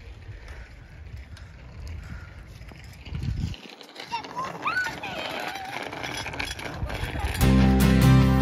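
Outdoor street ambience with a low rumble, broken by a cut about three and a half seconds in, then faint children's voices calling in the distance. Background music starts near the end and is the loudest sound.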